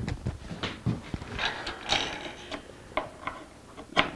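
Wooden cauls and their springs being fitted and adjusted on a guitar side-bending machine: a series of irregular clicks and knocks.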